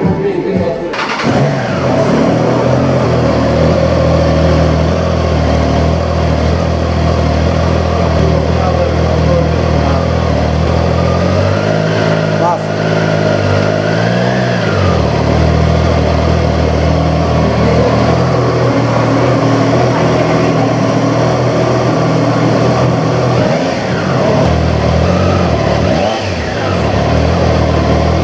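Triumph Tiger Sport 660's 660 cc inline three-cylinder engine starting and settling into a steady idle. About halfway through it is revved once, the pitch rising and dropping back to idle, with a smaller blip of the throttle near the end.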